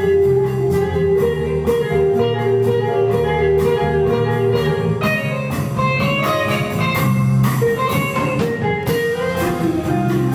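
Live jazz quartet playing: electric guitar over electric bass and a drum kit, with cymbal strokes throughout.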